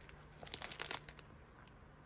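Thin plastic bag crinkling faintly as it is picked up and handled, a cluster of small crackles about half a second to a second in.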